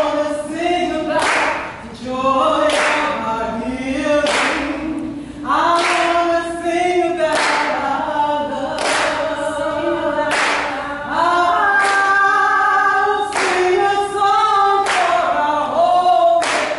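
A group of voices singing together a cappella, with hand claps in unison about every second and a half.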